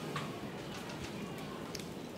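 A pause between voices: low background room noise with a few faint clicks, one just after the start and one near the end.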